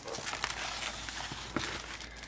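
Cardboard shipping box packed with paper shred and plastic bags of embellishments being moved aside on a cutting mat: a steady rustle with a few light taps.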